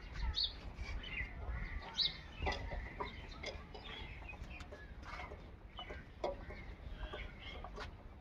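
Short, scattered bird calls, like fowl clucking, over a low rumble, with a few faint clicks.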